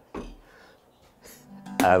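A single short metallic clunk just after the start, the heavy lathe tailstock coming to rest back on the bed, then quiet. Acoustic guitar music fades in near the end.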